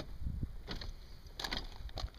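A man stepping down out of an RV's entry door: about three soft knocks and clicks of feet on the entry step and a hand on the door grab handle, over a low rumble.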